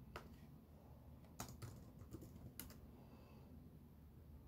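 Faint keystrokes on a computer keyboard: a handful of separate, irregular clicks over a low steady room hum.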